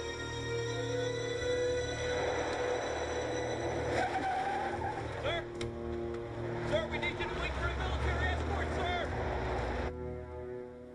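Film soundtrack: a sustained music score over a car's engine and tyre noise that builds from about two seconds in, with short high squeals through the second half. It all cuts off abruptly at the end.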